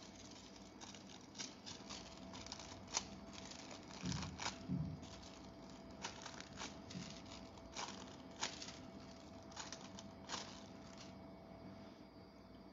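Thin sheet of gold nail transfer foil crinkling faintly as fingers press it onto a nail tip and peel it away: a scatter of small crackles, with a couple of duller rustles about four seconds in.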